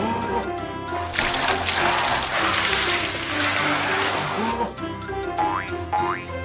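Cartoon water-spray sound effect from a water truck's nozzles, a rushing spray lasting about three and a half seconds, over light children's background music. Springy boing effects come in near the end.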